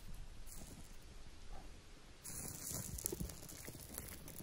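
Pine sap burning on the tip of a stick in a campfire flame, giving faint, irregular crackling. About two seconds in the sound turns brighter and hissier, with denser crackles.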